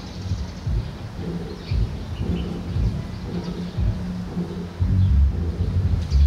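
Low, gusting rumble of wind buffeting the microphone, growing louder about five seconds in.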